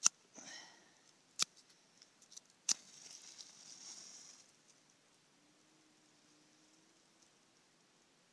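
Matches struck on a matchbox: three sharp strikes about a second and a half apart, the third catching and flaring with a hiss for a second or two.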